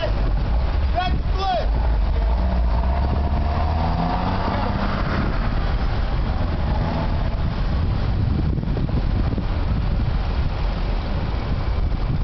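A steady low outdoor rumble runs throughout, with faint, distant voices calling now and then, most clearly about a second in.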